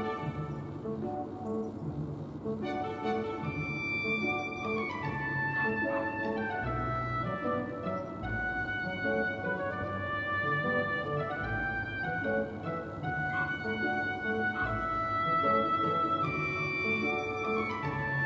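Background music: a gentle instrumental track with strings and piano, notes held and changing in steps.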